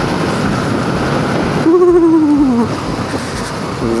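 Bajaj Pulsar NS200's single-cylinder engine running at a steady cruise, mixed with wind rush on the mount-mounted microphone. A little under two seconds in, a single long vocal hum from the rider falls slowly in pitch for about a second over the engine.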